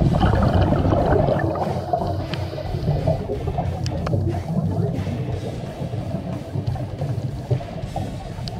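Background music with drums.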